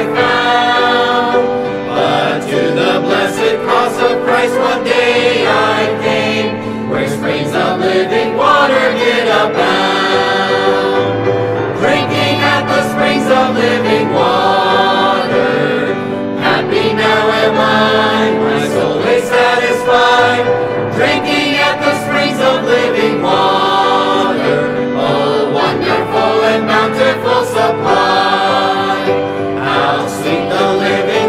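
A choir singing a hymn in gospel style, steadily and without a break.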